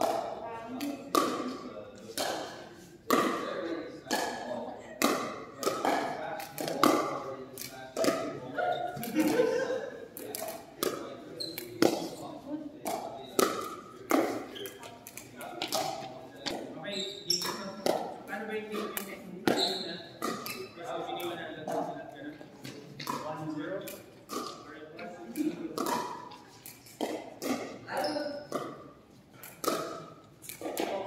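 Pickleball paddles striking a plastic ball, with the ball bouncing on a wooden gym floor: many sharp pocks and taps at irregular intervals, over players' voices and chatter echoing in a large hall.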